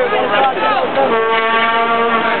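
A horn sounds one steady note for about a second, starting about a second in, after a stretch of nearby voices.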